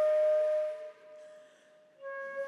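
Concert flute holding one long note, with audible breath in the tone; about a second in it drops away to a faint airy thread of the same pitch.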